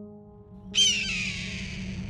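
A hawk's scream: one hoarse call that begins suddenly about three-quarters of a second in, falls in pitch and trails off, heard over a steady music drone.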